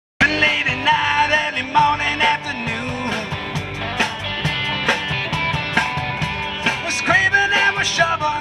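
Live rock band playing an instrumental intro: electric and acoustic guitars and bass guitar over a steady drum beat, with a lead melody that bends in pitch.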